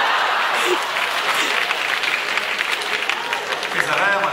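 Audience applauding: dense, steady clapping from a large crowd.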